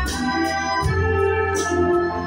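A live church ensemble playing a hymn: sustained, organ-like chords over a steady bass.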